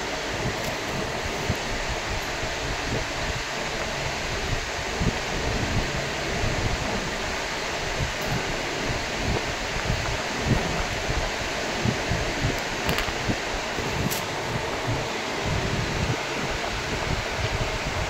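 Steady hissing room background noise, like a running fan, with uneven low rumbles and two faint clicks about a second apart in the last third.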